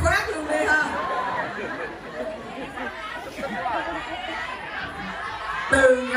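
Speech: a woman talking into a microphone in a large hall, with audience chatter underneath.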